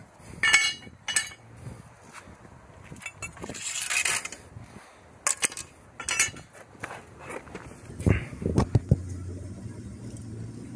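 Steel hand tools and a worn steel mower blade being handled and knocked together on concrete: a scattering of sharp metal clanks and clinks, with a brief hiss about four seconds in and a low steady hum setting in near the end.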